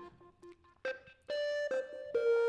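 Piano melody of a beat playing back from the DAW. A couple of faint notes fade at the start, then sustained notes come in about a second in. It is playing with the piercing high frequencies cut by EQ.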